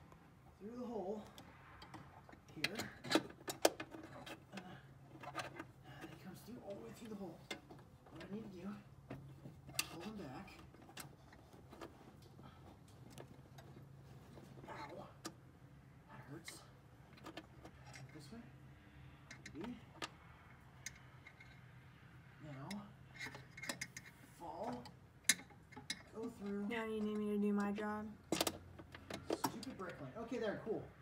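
Scattered light metallic clicks and taps of hands and tools working parts in a car's engine bay while a clutch master cylinder is being fitted, with quiet murmured voices in between. A held humming tone comes near the end.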